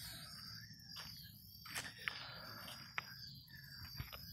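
Quiet outdoor background with a faint steady high-pitched drone and a few light, scattered clicks, footsteps on gravel as the person moves around the parked minibike. The engine is not running.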